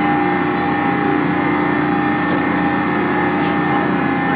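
Machinery of a spinning Quasar carnival ride running at speed: a loud, steady mechanical drone with a constant hum.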